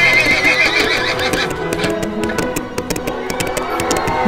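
A recorded horse whinny, a high quavering call lasting about a second and a half, then a quick run of clip-clop hoofbeats, over background music.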